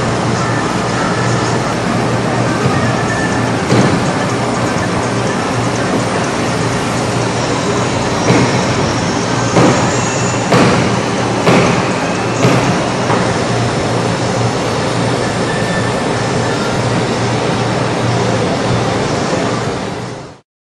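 Heat gun (hot-air plastic welder) blowing steadily with a low hum while a vinyl patch is heat-sealed onto an oil containment boom, with several short knocks in the middle of the stretch.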